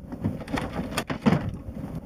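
Handling noise from a wooden storage hatch under a boat's cabin settee: a few light knocks and rubbing as hands work at it, the sharpest knock about a second in. The hatch is stuck.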